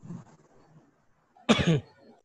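A person coughs once, briefly, about one and a half seconds in.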